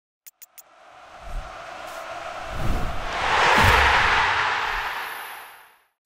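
Intro sting sound effect: three quick clicks, then a swell of noise that builds for about three seconds and fades away over the next two, with a few low thuds inside it.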